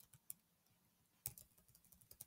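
Near silence broken by a few faint, separate keystrokes on a computer keyboard, backspace presses deleting typed code.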